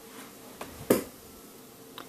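A single sharp click about a second in, with a fainter tick just before it and another near the end: handling noise from hands working a yarn needle through crocheted fabric.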